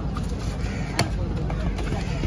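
Busy market background of murmuring voices and low rumble, with one sharp knock about a second in.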